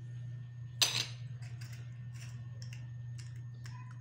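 A spoon clinking and scraping on a plate: one louder scrape about a second in, then a scatter of small clicks.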